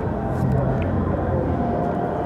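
Restaurant background noise: indistinct voices of other diners over a steady low hum.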